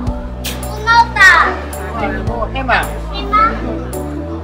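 Children's high-pitched voices calling out, loudest about a second in and again twice later, over background music with steady low sustained notes.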